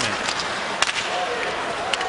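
Ice hockey game sound: steady arena crowd noise with two sharp cracks of sticks on the puck, about a second apart, as the puck is passed up the ice.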